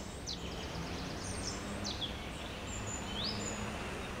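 Outdoor ambience of small birds chirping and whistling in short, scattered calls, one of them rising sharply near the end, over a steady low background hum.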